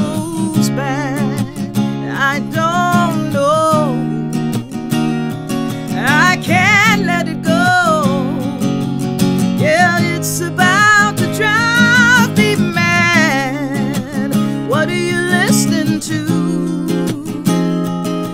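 Acoustic guitar strummed steadily under a woman's solo singing voice, which holds long notes with a wavering vibrato that come and go in phrases.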